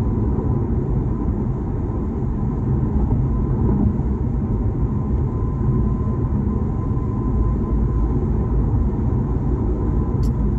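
Steady road and tyre noise of a car driving at speed, heard from inside the cabin: an even low rumble with a faint steady tone above it.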